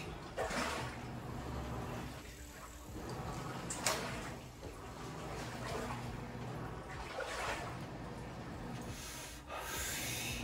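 A smoker's breathy puffs, drawing on and exhaling a cigarette about every three to four seconds. A steady hum from the coin laundry's running machines sits underneath.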